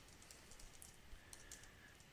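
Faint computer keyboard typing: a few light, irregular key clicks.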